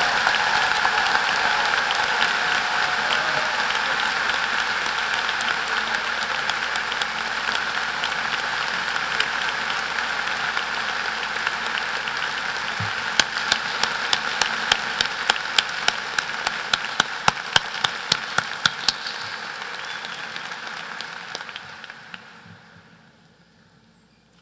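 Large crowd applauding at the end of a speech. Through the middle, a few sharp claps stand out above the crowd at about three a second, and the applause fades away near the end.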